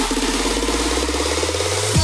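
Electronic dance music in a DJ mix: a sustained deep bass drone under a fast, buzzing synth pulse, ending in a quick falling sweep.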